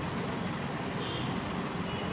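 Steady background noise, a low rumble with hiss, with a faint short high beep about a second in.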